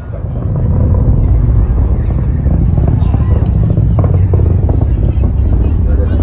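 Falcon 9 rocket's first-stage engines in ascent: a low rumble that builds over the first second, then holds loud and steady with crackling through it.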